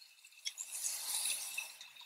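Faint handling sounds of a stainless steel measuring spoon over a glass bowl as oil is tipped in: a light tick about half a second in, then a soft hiss for about a second.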